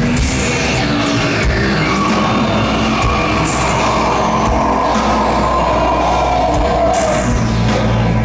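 Live electronic rock band playing loud through a venue PA, with synth sweeps gliding up and down over a sustained low bass.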